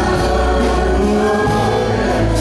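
A live worship band playing a gospel song: several voices singing together over acoustic guitar, violin and bass guitar, with steady held notes.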